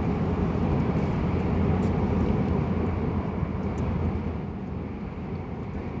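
Steady low rumble of a Shinkansen bullet train's passenger cabin while the train is moving, easing off slightly near the end.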